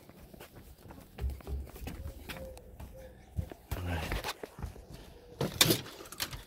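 Footsteps and handling knocks from a person walking while holding the phone, with low thuds a second or so in and a sharper knock near the end.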